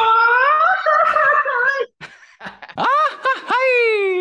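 Men's voices doing the Mexican grito, the ranchera yell: first a long held yell for nearly two seconds, then after a short break a string of yelps that rise and fall in pitch, ending in a long falling cry.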